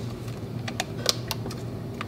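A few light, sharp clicks as hands take hold of the 120 film's backing paper at the top of a plastic LAB-BOX developing tank, over a low steady hum.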